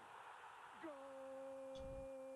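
A faint voice holding one long note at a steady pitch, starting about a second in: a football commentator's drawn-out 'gooool' call after a goal.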